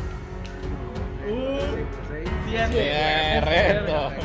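Background music: a song with a voice singing over it, the singing coming in about a second in and strongest in the second half.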